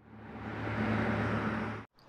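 Car sound effect: an engine running with road noise and a low steady hum, fading in over about half a second and cutting off abruptly near the end.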